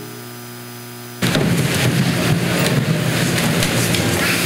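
A choir rising together from wooden pews: about a second in, a sudden loud rumble of shuffling, knocking and rustling that keeps on.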